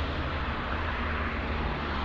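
Steady outdoor background noise with a low rumble, unchanging throughout.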